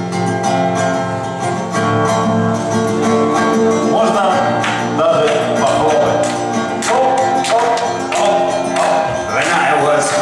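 Acoustic guitar playing the opening chords of a folk song, with a higher wavering melody line joining about four seconds in.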